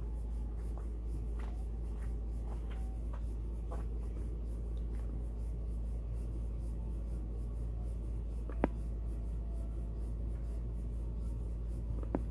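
Steady low background hum with a few faint short chirps early on, and one sharp click about three-quarters of the way through.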